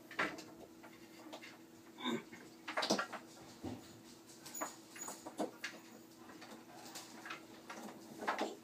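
Scattered light clicks and knocks of LED flood light fixtures and their power cords being handled and adjusted, the sharpest knock about three seconds in, over a faint steady hum.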